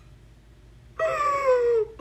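A woman's high-pitched squeal of excitement. It starts suddenly about a second in and falls in pitch for about a second.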